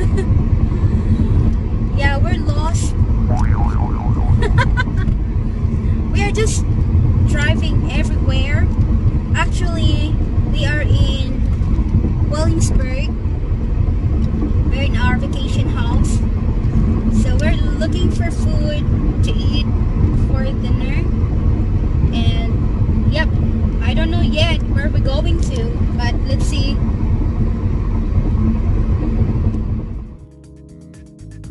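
Steady road and engine rumble inside a moving car's cabin, with a woman talking over it.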